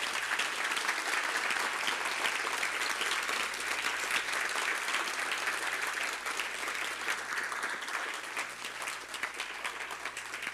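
Audience applauding: many hands clapping together in a dense, steady round that eases off a little near the end.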